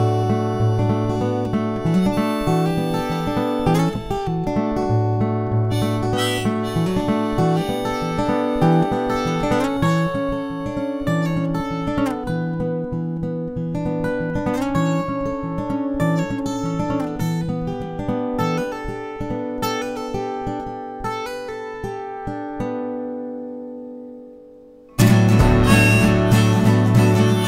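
Instrumental stretch of a folk song: acoustic guitar playing with harmonica, no singing. The music fades out near the end, then comes back in suddenly and loudly just before the end.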